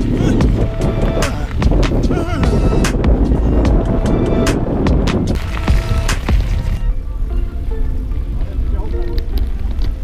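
Mountain bike riding fast over a hard-packed gravel track: tyre rumble with frequent rattles and knocks from the bike and wind on the microphone, noticeably quieter after about five seconds. Background music plays underneath.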